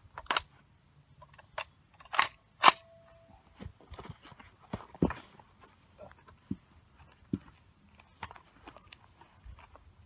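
Handling noise of a person getting down prone on a shooting mat with a rifle: scattered clicks, knocks and rustles, the loudest two sharp knocks about two to three seconds in, one leaving a brief faint ring.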